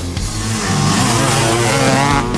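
A motorcycle engine revving, its pitch dipping and then climbing, over rock music.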